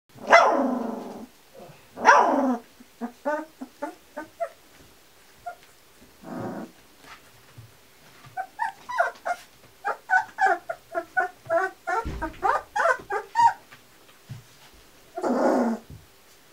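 Young Kuvasz puppies about 18 days old yelping and yipping: two loud drawn-out cries that fall in pitch in the first few seconds, then many short high yips in quick runs, with another longer cry near the end.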